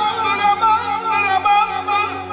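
Amplified male voice singing a wavering, heavily ornamented melody through a PA, in the style of Azerbaijani mugham, over electronic keyboard accompaniment.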